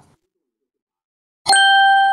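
Silence, then about a second and a half in a single bright ding: an end-screen chime sound effect of several bell-like tones that rings on and fades slowly.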